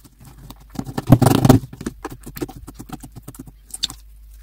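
Hands squishing and kneading a glossy slime, making quick wet clicks and squelching pops, with one louder squelch lasting about half a second, a second in.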